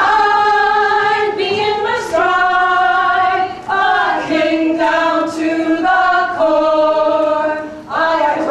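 A group of voices singing long held notes in harmony, the pitch stepping to a new note every second or so, with a short break near the end.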